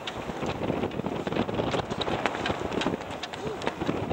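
Wind buffeting the camera microphone: a steady rush with many short crackles, over choppy water.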